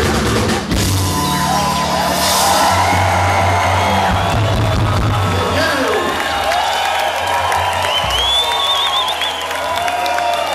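Live band with drum kit, congas, bass and guitars playing the final bars of a song over a cheering, whooping crowd. The band stops on a last low hit about eight seconds in, and the crowd goes on cheering and whistling.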